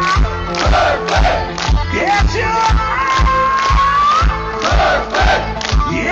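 Live heavy metal band playing loudly over a PA, with a steady pounding kick-drum beat under dense distorted guitars and a high melodic line that slides in pitch. Crowd noise is mixed in.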